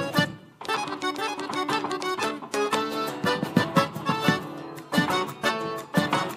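Malambo music with rapid, sharp stamps of the dancer's boots (zapateo) on the stage floor, with a brief break about half a second in.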